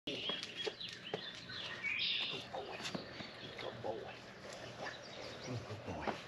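Birds chirping outdoors, their calls clearest in the first couple of seconds, with scattered light footstep clicks on pavement.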